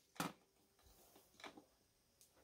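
Near silence: room tone with two faint clicks, one just after the start and a softer one about a second and a half in.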